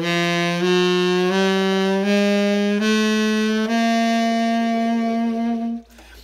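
Tenor saxophone playing a slow line of notes that steps upward, each note about three-quarters of a second long, ending on a held note of about two seconds that stops just before the end. It is played to demonstrate a mature, classic 1950s jazz saxophone tone, full and rich in overtones.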